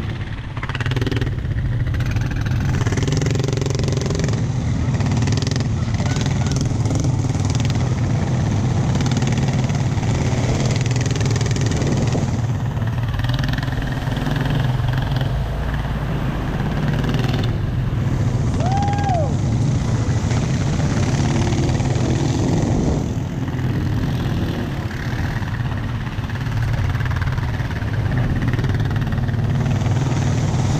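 ATV (quad bike) engine running steadily under the rider, heard from the machine itself, with tyre and mud noise as it rides a wet dirt trail.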